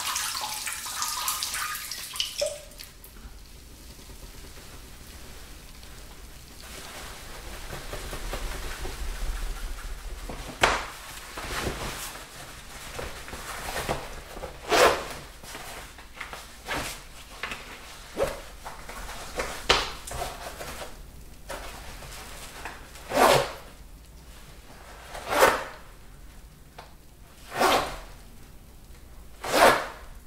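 A urine stream splashing into toilet water tails off and stops about two seconds in. Later comes a series of short, sharp handling sounds, roughly every two seconds near the end.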